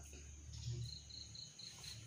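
A cricket chirping faintly: a short run of evenly spaced high-pitched pulses, about five a second, starting about a second in and lasting about a second.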